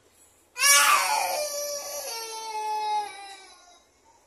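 A toddler crying: one long, loud wail that starts about half a second in, slides down in pitch and trails off near the end.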